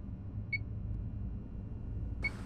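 A single short electronic beep from a bomb's digital countdown timer about half a second in, over a steady low rumble.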